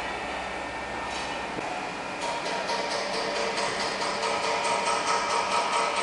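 Steady mechanical hum of workshop machinery; from about two seconds in a faint steady tone and light, regular ticking join it.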